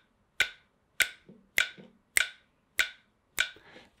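Phone metronome app clicking steadily at 100 beats per minute: six short, evenly spaced clicks, with finger snaps kept in time with them.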